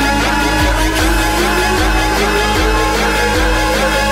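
UK bounce (scouse house) dance music: a steady pounding kick beat under repeating synth stabs, with a synth sweep rising steadily in pitch throughout.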